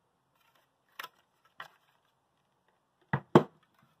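Handling noise: a couple of faint clicks, then two sharp knocks close together about three seconds in, as a hand-held fire alarm horn on its mounting plate is put back down on a table.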